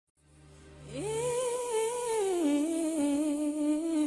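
Intro music: a single sustained hum-like note that glides up about a second in, holds, then steps down to a lower pitch and holds, over a faint low drone at the start.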